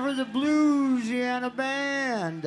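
A man singing long held, drawn-out notes into a stage microphone with little accompaniment, the pitch bending and wavering on each note.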